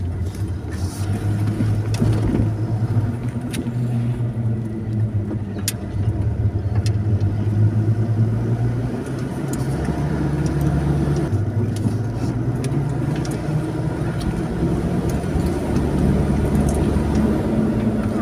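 Car engine and road noise heard from inside the cabin while driving, a steady low drone whose pitch steps up and down several times as the car's speed changes.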